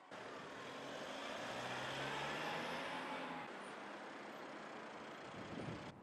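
A motor vehicle driving past in the street, growing louder to a peak about two seconds in and then fading, with a brief louder noise just before the end.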